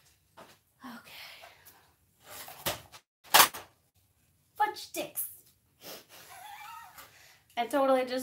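A heat gun dropped: two sharp knocks under a second apart, the second the loudest. Then a woman's voice, with speech near the end.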